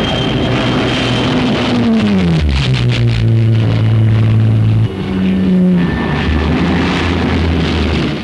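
Spitfire fighters' piston engines running loud as they pass low overhead. The engine note falls as a plane passes about two seconds in, and again shortly after five seconds, then fades near the end.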